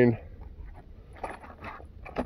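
Faint rustling and a few light clicks as a white cardboard box of .38 Special cartridges is opened and handled, over a low steady rumble.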